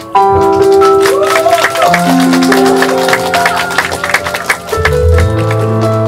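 Live rock band playing an instrumental passage of sustained keyboard chords over busy drums and cymbals. A lead line bends in pitch in the first couple of seconds, and bass guitar notes come in strongly near the end.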